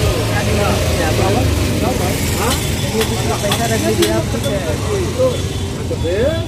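Busy street background: a vehicle engine running steadily under voices chattering nearby, with a few sharp clicks about halfway through.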